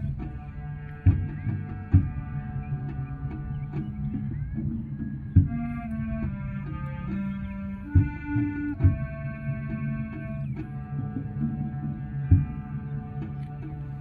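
Middle school concert band playing a slow passage of held wind-instrument chords that change every few seconds, with several sharp, loud percussion hits along the way.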